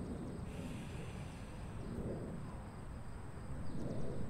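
A person taking one slow, deep breath in and out through the mouth: a soft airy hiss early on, then a softer breathy exhale. A steady faint high tone and a low background rumble run underneath.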